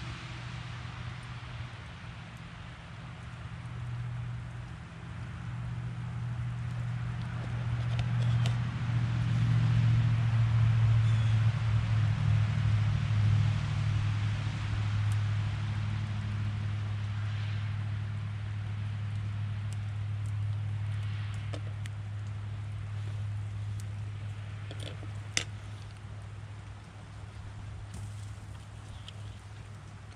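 A low engine hum that builds for about ten seconds and then slowly fades, over wind noise, with a single sharp click near the end.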